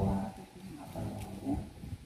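A man's voice amplified through a handheld microphone, speaking a short phrase at the start and another about a second in, with brief pauses between.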